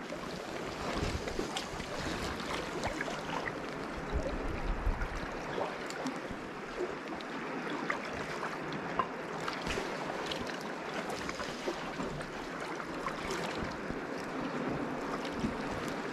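Sea water lapping and sloshing among concrete tetrapods: a steady wash with many small splashes. Wind buffets the microphone with low rumbles about a second in and again around the fifth second.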